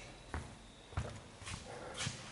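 Footsteps on a sports-hall floor, a person walking past close by, with a short dull footfall about every half second.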